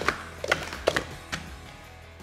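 Plastic sport-stacking cups clacking against each other and the mat as they are stacked and brought down at speed: a few sharp clacks about half a second apart, thinning out toward the end, with music underneath.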